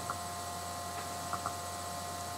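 Steady electrical hum with thin high tones in the recording, with two faint ticks about a second and a half in.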